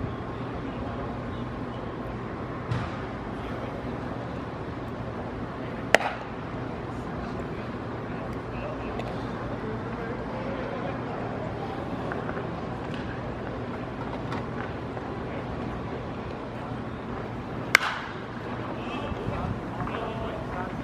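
Ballpark ambience with steady background chatter, broken by two sharp cracks: one about six seconds in, and a louder one near the end, which is the bat hitting the ball as it is put in play.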